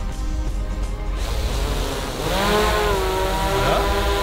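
Quadcopter drone's motors and propellers starting up about a second in, the whine rising in pitch as they spin up and then settling into a steady hover hum as the drone lifts off from the hand. Background music runs underneath.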